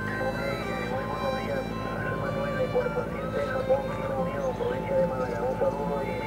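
A man's voice coming over an amateur radio transceiver's speaker: the other station talking back on single sideband, with a wavering pitch and steady whistling tones behind it.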